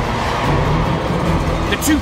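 Racing quadcopter's electric motors buzzing in flight, over background music.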